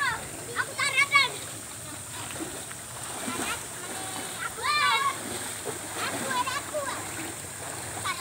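Water splashing and sloshing as children wade and swim in a shallow muddy stream pool, over the steady sound of running water. Short high-pitched children's calls come about a second in and again near the middle.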